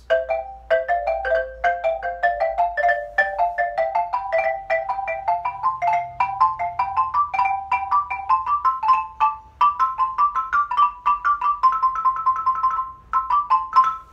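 Xylophone played with two mallets: a fast, steady run of double stops, each note led in by quick grace-note strikes, climbing gradually in pitch. A short break comes about a second before the end.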